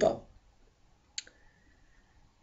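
A single sharp click about a second in, followed by a faint steady high tone for about half a second, in a near-silent pause.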